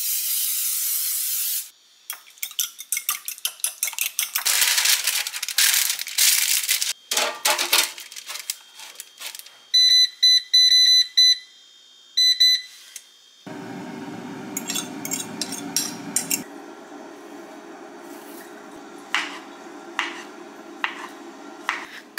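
Kitchen breakfast-making sounds: a short hiss, then a fork rapidly whisking eggs in a ceramic bowl with clinks against the dish. Next, a countertop appliance's buttons beep about nine times and the appliance starts running with a steady hum. A knife then taps through a banana onto a wooden cutting board a few times near the end.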